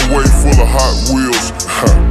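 Chopped-and-screwed hip-hop track: a slowed, pitch-lowered beat with heavy bass and deep, drawn-out vocals. The bass drops out for about half a second near the end, then comes back in.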